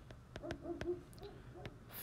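A person's voice, faint and low, in a few short hummed or murmured sounds, with light taps of a stylus on a tablet screen.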